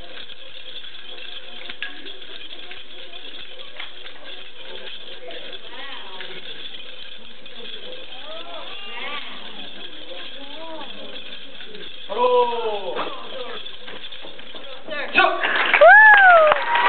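Steady hall background noise with faint voices. A voice calls out a little after twelve seconds in, and louder voices come in near the end.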